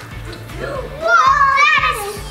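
A young girl's excited high-pitched vocalising, swooping up and down in pitch, over background music with a steady low beat.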